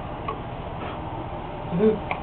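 Steady room noise with a couple of faint clicks, and a short voice sound near the end.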